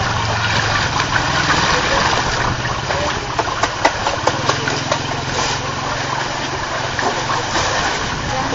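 Water splashing and lapping around a hand held in a shallow pool while a large eel swims up to it, with small clicks, over a steady low hum.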